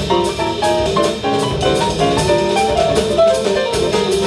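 Live jazz piano trio: a Yamaha grand piano plays quick runs of single notes over upright double bass and drum kit with cymbals.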